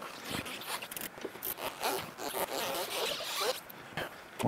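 Rapid, uneven clicking of an insulated ratchet wrench backing a nut off a high-voltage bus-bar stud. The clicking stops shortly before the end.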